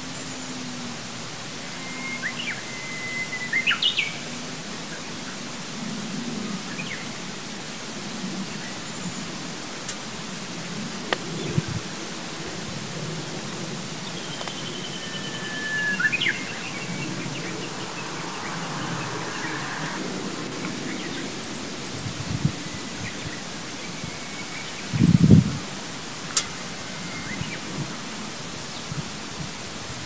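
Outdoor ambience: a steady background hiss with occasional short bird chirps and calls, a few heard about three seconds in and around the middle. A low thump comes near the end.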